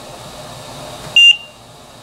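Trilogy 100 ventilator giving one short, high electronic beep about a second in as the detachable battery is pushed back into it. The beep signals that the machine has detected the battery.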